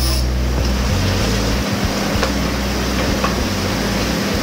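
Narrow-bladed power saw cutting a thin wooden board: a loud, steady, noisy whir.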